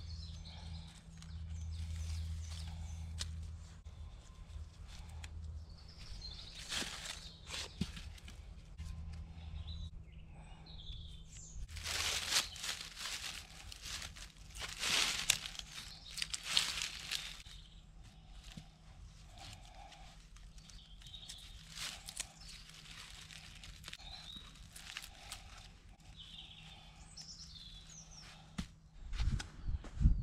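Rustling and scraping of paracord being wrapped and pulled tight around three hardwood poles, with dry leaf litter crackling as the hands and knees move. The rustles come in irregular bursts, loudest for a few seconds about halfway through. Faint bird chirps sound now and then.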